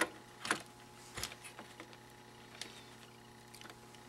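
A few light clicks and taps of a small circuit board, the FG085 DDS generator board, being set down and handled in an instrument case, the sharpest right at the start and about half a second in, with fainter ones later. A faint steady hum runs underneath.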